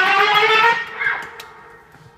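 Electric guitar's last sustained note of the song, sliding down in pitch, lifting a little, then fading out about a second and a half in.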